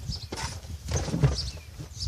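Wooden swarm trap box being pushed into a car boot: a few irregular knocks and scrapes of wood against the boot floor and sides.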